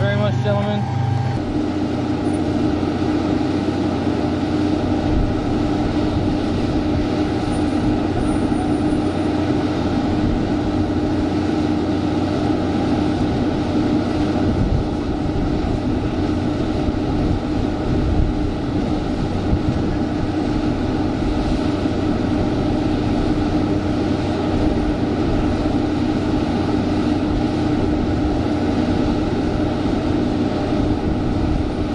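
Steady flight-line machinery noise at a parked jet aircraft: a constant drone with a low hum that holds without change, after a cut about a second and a half in.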